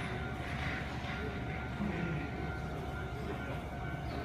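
Steady low rumble with a faint steady hum, the background sound of a covered Shinkansen platform.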